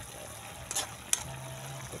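Chicken adobo sizzling in a wok as its sauce cooks down, with a metal ladle stirring and clinking against the pan twice, about a second in.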